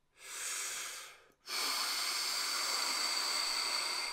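A man breathing deliberately: a short, softer breath in, then from about a second and a half in a long, steady, louder exhale lasting nearly three seconds. This is a long slow exhale of the kind used to slow the heart rate.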